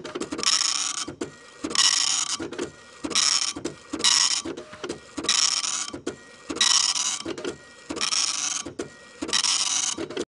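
Machine-printing sound effect: a pass of rapid buzzing about every 1.2 seconds with clicks between, which cuts off abruptly at the end.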